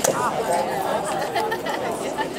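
Several people talking at once in overlapping chatter, with a sharp click right at the start.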